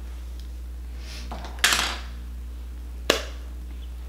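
A short clatter of small hard objects about one and a half seconds in, then a single sharp click, over a steady low hum.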